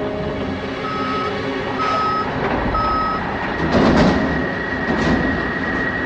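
Three short electronic beeps about a second apart, over a steady background rumble. A louder noisy swell follows near the four-second mark, and a thin steady high tone runs from the middle on.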